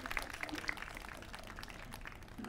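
Light scattered applause from a small audience, thinning out toward the end.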